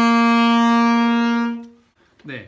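Alto saxophone holding one long, steady note, the G that a G major scale exercise returns to at its end. The note fades out about a second and a half in.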